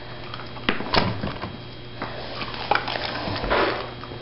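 A few light clicks and taps as a dog shifts its feet in a low wooden box on a hardwood floor.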